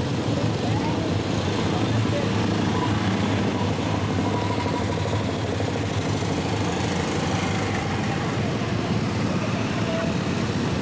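A steady engine drone with indistinct voices mixed in, holding an even level with no sudden events.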